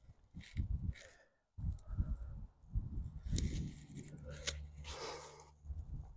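A rock climber's hard breathing and grunts while straining on a steep overhang, broken by a couple of sharp clicks, over a low rumble.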